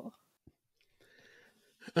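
A pause between speakers: mostly very quiet room tone, with a faint breath before the man begins his reply.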